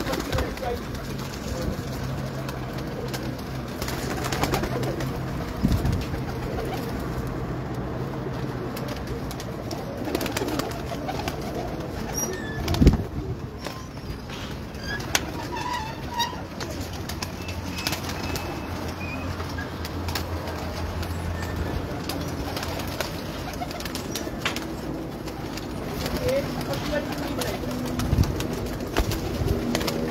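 A flock of domestic high-flyer pigeons cooing in their loft, a low droning that keeps going, with scattered clicks. A single sharp knock about thirteen seconds in is the loudest sound.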